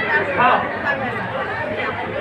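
Voices talking with crowd chatter in a large hall.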